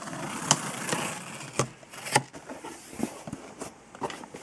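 Packing tape on a cardboard shipping box being slit with a blade and the flaps pulled open: scraping and rustling of tape and cardboard, with a few sharp snaps in the first half, then quieter handling.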